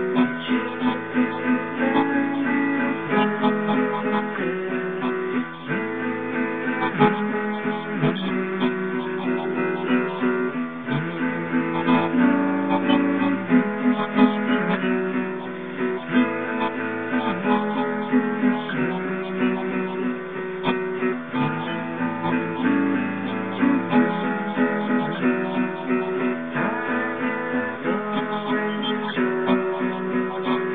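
Solo acoustic guitar playing an instrumental passage of chords, moving to a new chord every second or two, with no singing.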